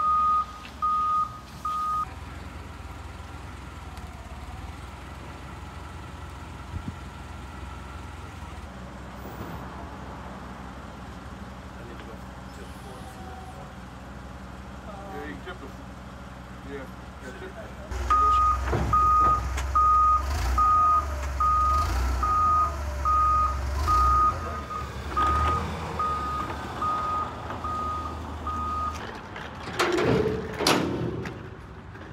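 Forklift reversing alarm beeping, a little more than one beep a second, for the first couple of seconds and again through the last third, over the low hum of the forklift's engine, which is louder while it beeps.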